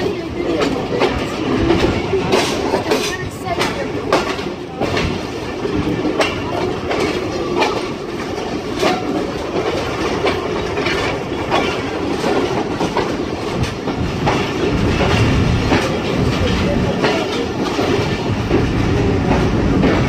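Passenger coach of the Karakoram Express rolling slowly into a station, heard from its open door: a steady rumble with irregular clicks of the wheels over the rails, slowing as the train draws up to a stop.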